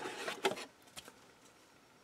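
Faint handling noise of thin laser-cut plywood sheets being lifted out of a cardboard box, with a couple of light clicks in the first second.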